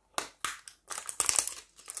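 Small perfume packaging handled by hand, crinkling and rustling in a string of short, irregular crackles and taps, busier in the second half.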